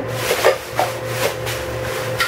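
Rummaging through a bag of empty beauty-product containers: rustling with several light knocks as bottles are handled.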